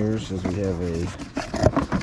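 A man's voice making a drawn-out, wordless vocal sound, then the rustle and sharp snaps of cardboard box flaps being pulled open, loudest about a second and a half in.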